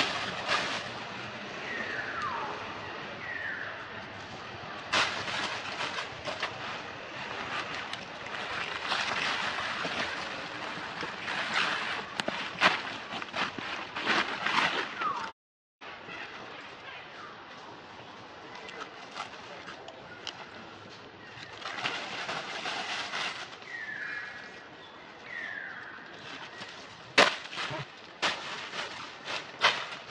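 Dry leaf litter crackling and rustling as long-tailed macaques shift about and handle leaves on the forest floor, with a few short falling calls, twice in pairs.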